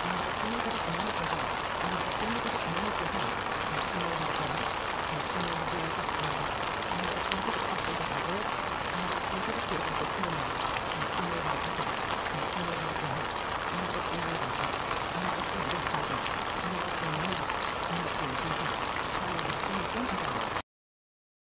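Steady water-like hiss, like rain or boiling water, with a faint, muffled low voice speaking indistinctly underneath: the layered spoken affirmations of a subliminal track.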